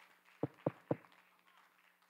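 Three quick, soft thumps about a quarter second apart in the first second, then only faint room hum.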